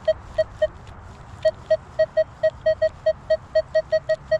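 Minelab Equinox metal detector sounding its short, mid-pitched target beep over and over as the coil passes a target: three beeps, a short gap, then a steady run of about four beeps a second. The detectorist reads the signal as a target right on the surface.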